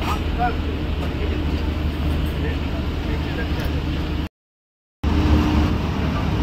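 Steady low engine hum with faint voices in the background; the sound drops out completely for under a second about four seconds in, then the same hum resumes.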